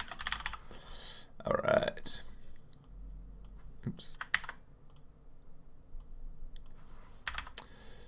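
Computer keyboard typing: scattered keystrokes and clicks in a few short clusters. A brief low vocal sound comes about one and a half seconds in.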